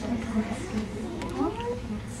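Indistinct voices: people talking in a small group, the words not clear.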